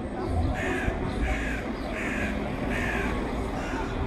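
A bird calling four times in a row, the calls evenly spaced about two-thirds of a second apart, over steady street background.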